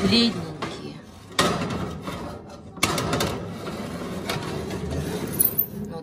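Metal baking tray of cupcakes being moved to a higher shelf of an open oven: the tray scrapes and clunks against the oven's rails. There are sudden knocks about one and a half and about three seconds in.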